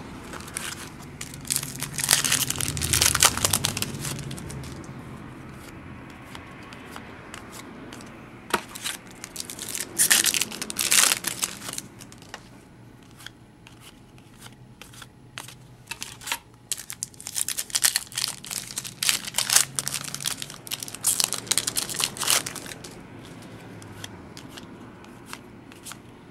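Foil trading-card pack wrapper crinkling and tearing as packs are opened, in several bursts, with cards handled between them.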